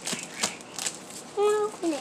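Plastic bubble wrap crinkling in a run of short crackles as a package is pulled open, with a brief voice about a second and a half in.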